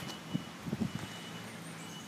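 Faint footsteps on tarmac, a few soft steps in the first second, over a quiet steady outdoor hiss.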